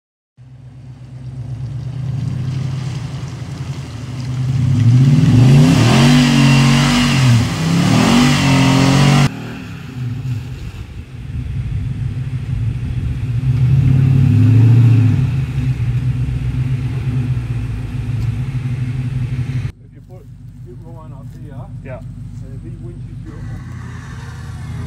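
Nissan Patrol Y62 engine revving hard as the 4x4 drives through a muddy bog hole, its pitch rising and falling under load, loudest about five to nine seconds in. The sound breaks off sharply twice, and the last few seconds hold only a quieter engine under a voice.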